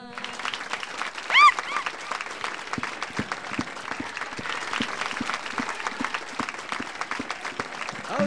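Audience applauding steadily, with one short high-pitched cheer about one and a half seconds in.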